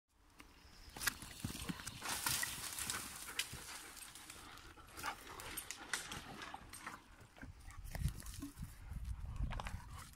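German Shepherd dogs moving about on dry twigs and forest litter: scattered rustles and crackles of paws and footsteps, busiest early on, with low rumbles near the end.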